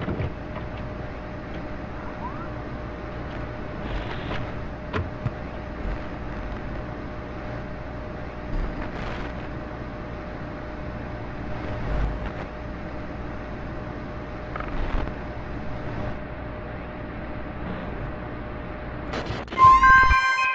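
Steady hissing, rumbling background noise with a faint constant whine and scattered clicks and knocks. Synth music starts at the very end.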